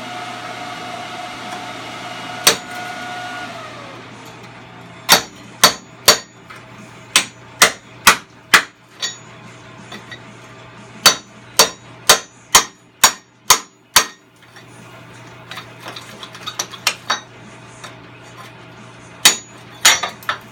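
Hammer blows ringing on a rusted steel hinge on a truck frame, about two a second in two runs of seven or so, with a couple more near the end, knocking the plasma-cut hinge loose. In the first few seconds the plasma cutter's hiss and hum wind down and drop in pitch.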